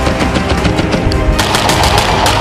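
Rapid rifle gunfire over background music, the shots coming in quick succession and growing stronger about a second and a half in.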